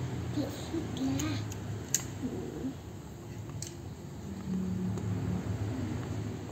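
A plastic rice paddle pressing and scraping crumbly steamed rice-flour dough around an enamel bowl, breaking it into fine crumbs: a quiet, uneven scraping with a couple of light clicks.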